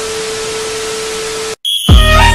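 Television static sound effect: a steady hiss with a single held mid-pitched beep tone, cutting off suddenly about one and a half seconds in.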